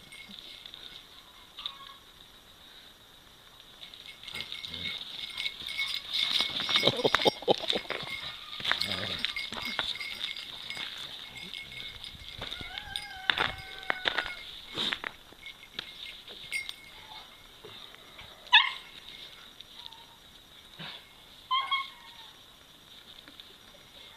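Dogs play-wrestling, an Akita puppy among them, with scattered short dog vocal sounds: a couple of high, gliding whines about halfway through and brief sharp yips later on.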